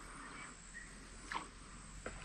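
Faint outdoor ambience: a steady insect drone with two brief, faint chirps, one just before the start and one over halfway through.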